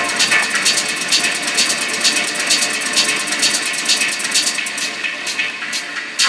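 Techno in a breakdown: the kick drum and bass are filtered out, leaving evenly spaced hi-hats and percussion over a bright synth layer.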